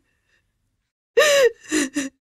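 About a second of silence, then a woman's tearful, sobbing gasp and a choked, crying voice.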